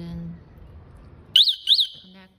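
Electric-scooter anti-theft alarm siren giving two quick, loud, high chirps, each sweeping up and back down in pitch, about a second and a half in, as its wiring connectors are plugged into the scooter.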